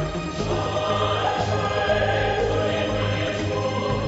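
Dance accompaniment music with a choir singing sustained notes over a steady low bass note.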